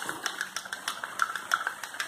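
Plastic spatula stirring a liquid in a plastic measuring cup, knocking and scraping against the cup's sides in light ticks, about four a second.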